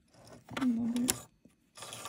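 Necchi 102D sewing machine mechanism giving a sharp click about a second in and a short rattle near the end, around a woman's single spoken word.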